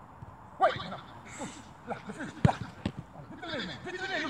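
A football struck hard about two and a half seconds in, a single sharp thud that is the loudest sound, with a fainter knock just after, among several short high calls from voices.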